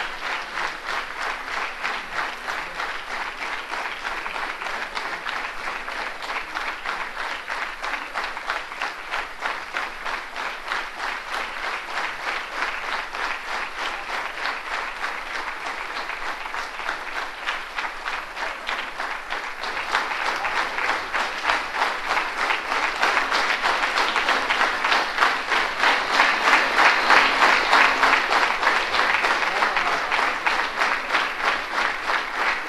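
A large audience applauding, the clapping dense and steady, growing louder from about two-thirds of the way in.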